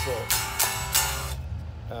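Electric guitar strings strummed through an amplifier in a quick run of scratchy strokes over the first second and a half, over a steady low amp hum.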